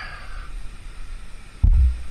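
A short, dull low thump about a second and a half in, over a quiet background.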